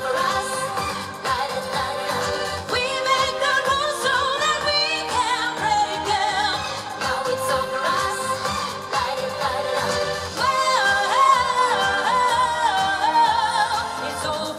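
Pop song performed live: a woman sings a wavering melodic line with quick pitch steps over a loud electronic backing track.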